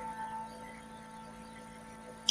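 A faint steady hum made of a few held tones, slowly fading.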